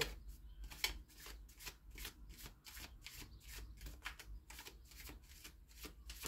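A deck of oracle cards being shuffled by hand: a soft, quick run of card snaps and riffles, about three or four a second.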